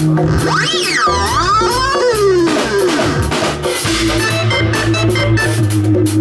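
Live roots reggae band playing, with drum kit and organ. Over the first three seconds a pitch sweeps up and down several times, then the organ settles into steady held chords over a low sustained note.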